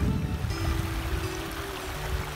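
Rushing creek water that fades out within the first half second, giving way to soft background music holding a low, steady note.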